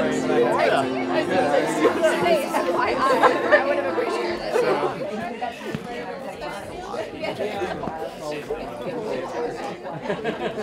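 Indistinct chatter of many people talking at once in a large room, louder for the first half and quieter after about five seconds.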